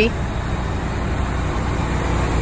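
Steady low rumble of an idling car engine.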